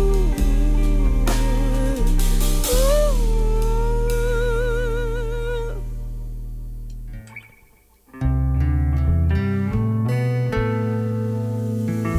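A woman singing with vibrato over a strummed acoustic guitar; her long held note ends about six seconds in and the guitar rings out and fades almost to silence. About two seconds later she picks a short run of single guitar notes.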